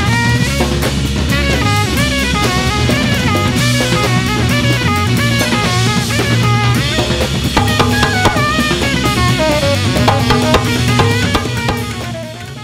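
Live band music: a drum kit playing a busy groove with bass drum, snare and rimshots, under a bass line and a moving melodic lead line.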